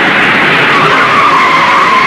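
Jet airliner landing: loud jet engine noise with a high whine that sinks slightly in pitch near the end.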